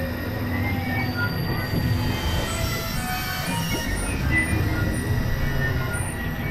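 Experimental electronic drone music: a dense low rumbling drone with many short high tones scattered over it, at a steady level, with a grinding, industrial-noise character.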